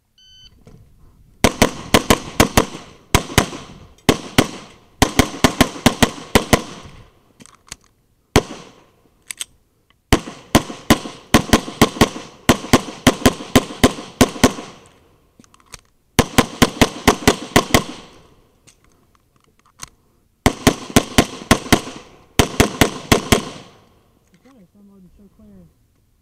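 A shot timer's start beep, then a Tanfoglio Stock III pistol firing fast strings of shots, several shots to each string, with short breaks between strings. The shots continue until near the end.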